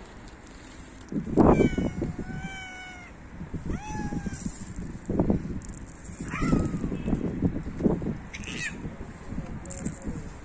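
Stray cats meowing three times: a long, drawn-out meow, then a short rising-and-falling one, then one that falls in pitch. Low bumps and rustles come in between, the loudest about a second and a half in.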